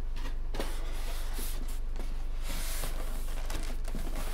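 Faint rustling and sliding of a cardboard box and its packaging being handled, over a steady low hum.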